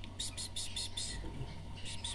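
Nestling canary × common linnet hybrids begging to be fed: a run of short, high cheeps about five a second, breaking off and starting again near the end.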